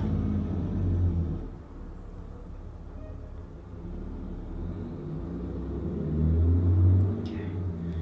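A low rumble that swells twice: about a second in, and again around six to seven seconds in.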